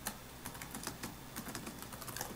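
Faint computer keyboard typing: a short run of separate keystrokes.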